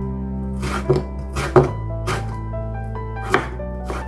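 A chef's knife slicing pickled Korean melon on a bamboo cutting board: about five irregular cuts, each ending in a knock of the blade on the board, the loudest about one and a half seconds in.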